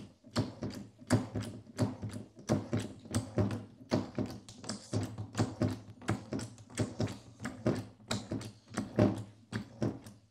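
A Parker hydraulic hand pump being worked by its lever, a run of sharp clicks about two to three a second, driving the KarryKrimp hose crimper's top cover down toward its plate before the crimp.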